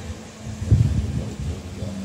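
Low rumble of wind on the microphone, gusting briefly about a second in.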